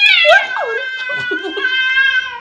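A cream Scottish Fold cat giving one long, drawn-out yowl. The call opens high, dips a little, then holds a nearly steady pitch.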